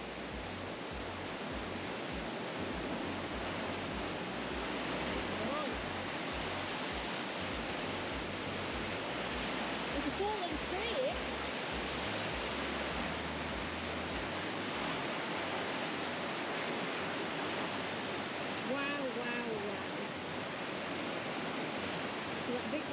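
River water rushing through a narrow limestone gorge, a steady roar of water noise. A low rumble sits under it for roughly the first two-thirds, and a few brief voice-like sounds come through, around the middle and again near the end.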